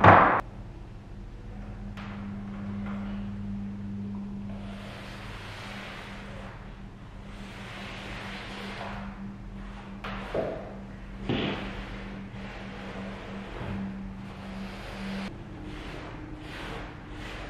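A sharp thump at the start as a foot lands on an aluminium stepladder, then a steady low hum under several soft swishes of a brush working limewash onto a plaster wall.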